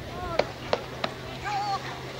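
Short, bending voice calls from people, with three sharp clicks about a third of a second apart in the middle.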